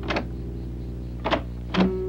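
Metal door latch worked by hand: a sharp click near the start and two more clicks about a second later, over soft sustained background music.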